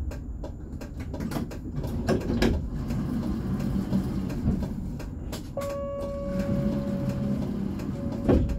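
Tram running slowly over a rail junction: a low rumble with repeated sharp clicks and knocks as the wheels cross the switch and crossing rails. Near the end a steady mid-pitched tone sounds for about two seconds.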